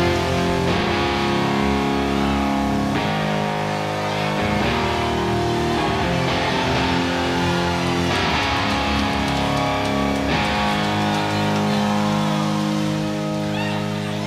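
Live rock band's electric guitars ringing out held chords, changing every second or two, in a quieter instrumental passage of the song. Whoops from the crowd start near the end.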